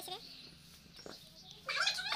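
A young boy's high-pitched voice trailing off at the start, then a quiet stretch with a faint knock about halfway. Near the end his voice starts again with sliding, squeal-like vocal sounds.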